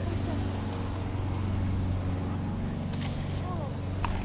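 Steady rushing noise and low hum of a bike ride in motion, with wind on the microphone; a faint voice about three and a half seconds in.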